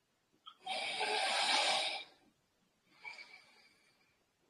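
A person breathing out hard in one long exhale of about a second, then a shorter, fainter breath about three seconds in, with the effort of shaking the raised arms and legs.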